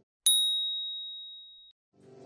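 A single high, bell-like ding struck once and left to ring out, fading over about a second and a half: an edited-in timer chime marking the switch from the rest countdown to the next exercise.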